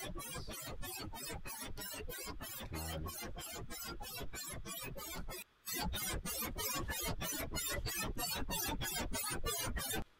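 OSCiLLOT modular synth patch, run through a grain delay and a pitch shifter, playing an electronic sound of rapid, even pulses, about five or six a second, with a brief break about five and a half seconds in.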